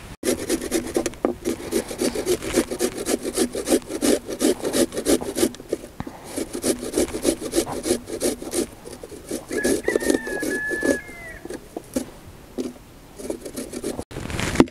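Raw potato being grated on a metal box grater: quick rasping strokes, about four a second, with a short break midway, stopping a couple of seconds before the end.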